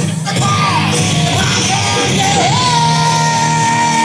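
Rock band playing live with drums and electric guitar, a male voice singing and yelling the vocal line. About halfway through, a high note starts and is held steady.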